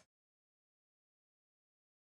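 Near silence: the sound track is gated to nothing.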